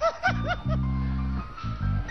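A short snickering laugh, three quick rising-and-falling yelps at the start, over music of low held notes that stop and start.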